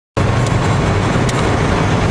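Steady road and engine noise heard inside a car travelling at highway speed, with a couple of faint clicks.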